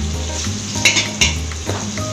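Chopped garlic and red pieces frying in oil in a large steel wok, sizzling while a metal slotted spatula stirs them. The spatula scrapes and clinks against the wok a few times about a second in.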